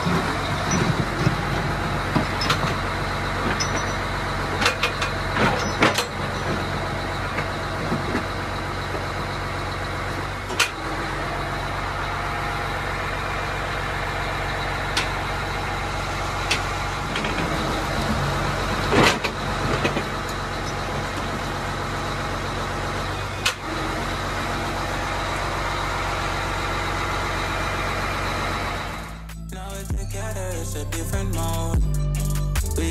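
Grab lorry's diesel engine running steadily to work the crane, with a few sharp knocks and clanks as the clamshell grab bucket digs into and lifts soil. Near the end the engine sound cuts away and music begins.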